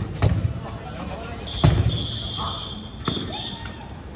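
A few dull ball thuds on the hard court. A whistle blown in one long, steady blast lasting about two seconds, starting about one and a half seconds in, signals the start of the dodgeball round.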